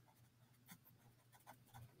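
Near silence, with a few faint soft ticks.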